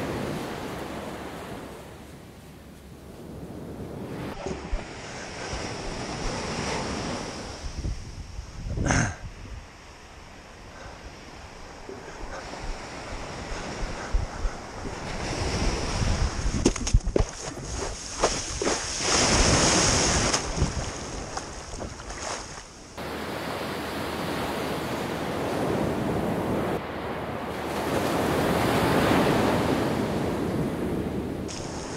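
Small waves breaking and washing up a sandy beach, with wind buffeting the microphone. The sound changes abruptly a few times and is louder in the second half.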